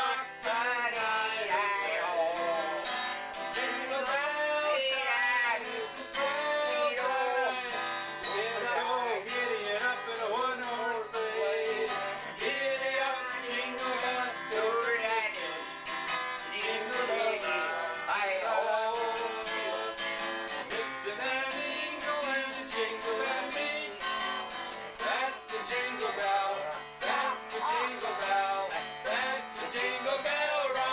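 Acoustic guitar strummed steadily, with a voice singing a melody over it.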